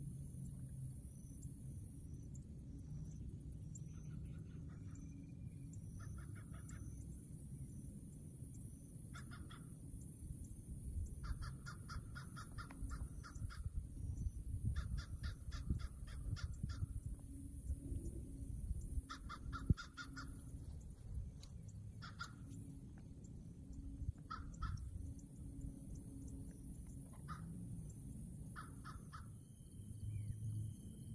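Crows cawing in repeated bursts of quick calls, over a low steady rumble. There is one sharp click about two-thirds of the way through.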